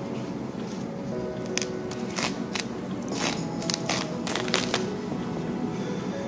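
Crackling and tearing of a disposable sanitary pad's synthetic layers being peeled apart by hand, in many short irregular crackles, over faint background music.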